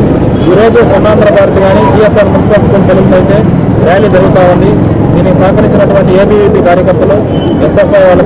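Speech only: a man talking steadily into a microphone, over a steady low background hum.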